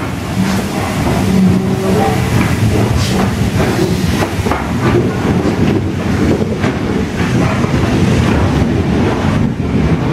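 BR Standard Class 9F steam locomotive No. 92214 running light engine slowly past at close range: a steady clatter of wheels and running gear over the rails, with irregular clanks and clicks.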